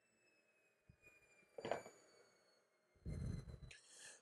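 Faint, slowly falling whine of a table saw blade coasting down after a crosscut. A light knock comes about a second and a half in, and a short low rumble of handling follows near the end.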